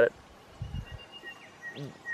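Quiet outdoor bush ambience with a faint bird call: a thin, high whistled note held in the middle, then a shorter, lower whistled note near the end. A soft low rustle comes a little over half a second in.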